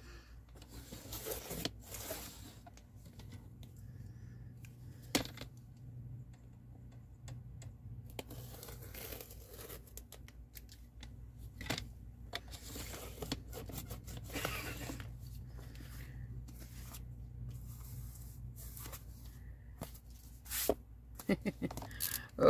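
Paper being cut along the edge of a paper trimmer through a block of book pages: intermittent dry rasping strokes, with a sharp click about five seconds in. A low steady hum runs underneath.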